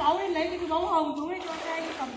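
A person's voice, drawn-out and wavering in pitch, with no words that can be made out.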